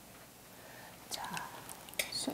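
Mostly quiet room tone. About a second in comes a softly spoken word, with a few faint clicks around it.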